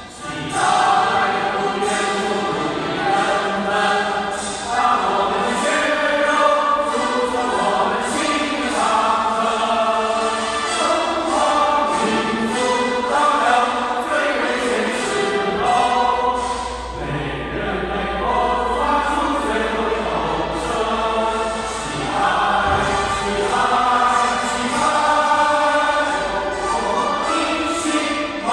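A national anthem sung by a choir with accompaniment, played back over the hall; the choir's chords begin about half a second in after a short break, then run on as steady, full-voiced singing.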